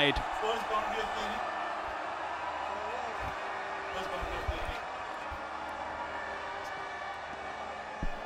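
Cricket stadium ambience: a steady murmur from the crowd at the ground, with a few faint distant voices and a few dull thumps.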